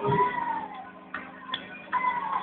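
A choir's song ending: a single voice holds a high note that sags slightly and fades within the first second. It is followed by quieter room noise with a few sharp taps.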